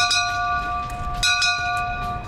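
Brass ship's bell rung by hand, struck twice, once at the start and again just over a second later, each strike ringing on in a clear sustained tone. It is the ceremonial 'last bell' marking the end of school.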